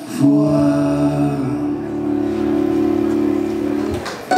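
Two male voices sing a long held note in close harmony, closing the song.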